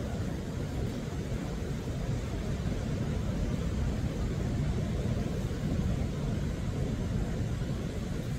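Ocean surf breaking against a rocky shore, a steady low rumble of noise.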